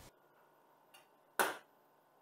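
A single short, sharp knock on a stainless steel worktop about one and a half seconds in, with a faint click just before it; otherwise near quiet.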